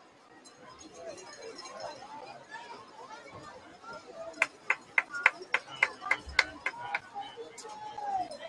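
Football-crowd chatter. About halfway through, a cowbell is struck about ten times in quick succession, roughly four strikes a second, for a couple of seconds.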